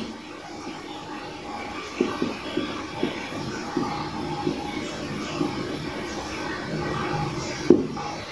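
Marker pen writing on a whiteboard: short scratchy strokes and light taps of the tip. There is a sharper tap near the end, over a steady low room hum.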